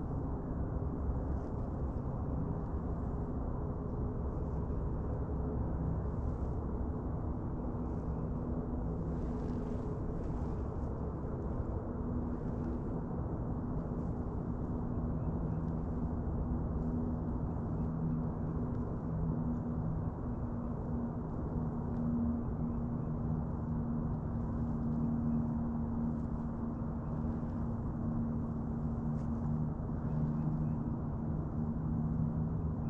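Old Town ePDL kayak's electric drive motor running with a steady hum, its pitch wavering slightly.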